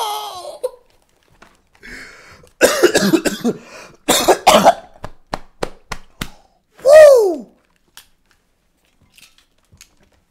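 A man laughing hard and coughing, then a quick run of about five sharp hits. About seven seconds in comes one loud vocal cry that slides down in pitch.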